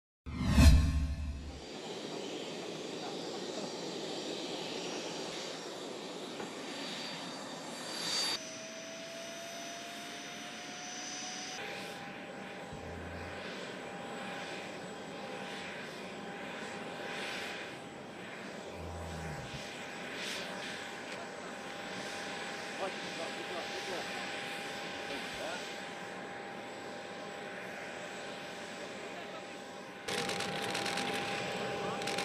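Jet aircraft engine noise on an airport apron: a steady rushing sound that begins with a loud burst, with a high whine that appears about eight seconds in, rises slightly and then holds steady.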